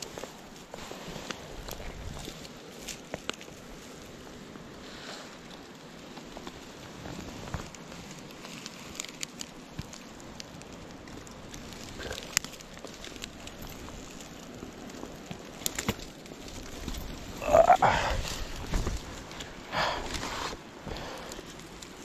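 Hands rummaging through grass and dry stems at a creek's edge, a low rustle with small crackles and snaps. About seventeen seconds in comes a short, louder grunt-like sound, and a fainter one a couple of seconds later.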